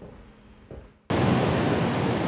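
A quiet second, then a sudden cut to large ocean surf breaking on a beach: a steady, loud wash of wave noise.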